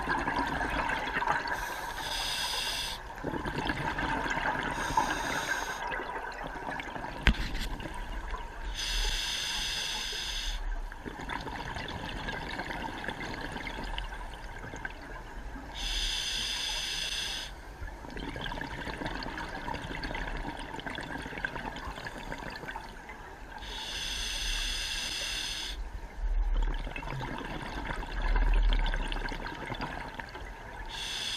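Scuba diver breathing through a regulator underwater: slow breaths, each exhale letting out a burst of bubbles every few seconds over a steady watery hiss.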